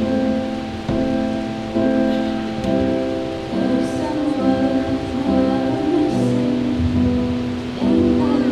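Electronic keyboard playing a slow piano accompaniment: held chords that change about once a second over low bass notes.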